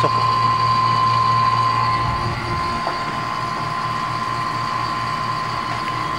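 Electric rotary-vane refrigeration vacuum pump running steadily with a low hum, evacuating an air conditioner's refrigerant lines through the low-side port to clear out air let in by a leak. A steady high whine in its sound fades about two seconds in, and the hum turns rougher.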